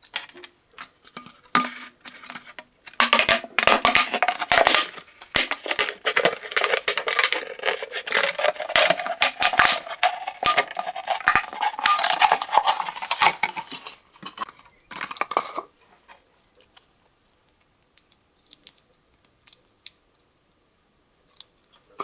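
Swiss Army knife blade cutting into a thin plastic drink bottle: the bottle wall crackles and scrapes as the blade is worked through it. The cutting runs dense and loud from about three seconds in until about fourteen seconds, comes back in a short burst, then fades to scattered light ticks.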